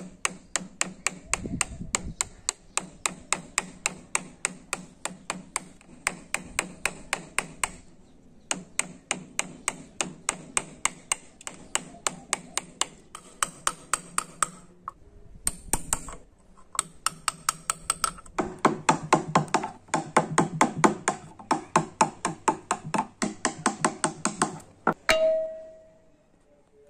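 A wood chisel being struck in quick, even taps, about three a second with two short pauses, as it cuts tread notches into the rim of a wooden toy tractor tyre. A short tone sounds near the end.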